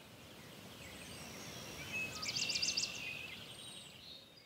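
Outdoor ambience with a bird calling: a rapid, high trill about two seconds in, with a few shorter chirps around it, over a steady hiss that swells and then fades.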